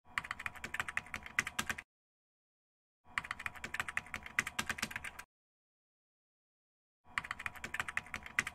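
Computer-keyboard typing sound effect: three bursts of rapid key clicks, each about two seconds long, separated by dead silence. Each burst goes with text being typed out on screen.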